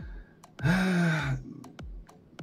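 A man's breathy sigh, about a second long, its pitch drooping slightly toward the end, with a few faint clicks around it.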